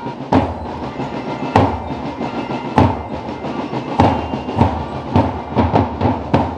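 Drum-led march music: a steady beat with a strong drum hit about every 1.2 seconds and lighter hits in between.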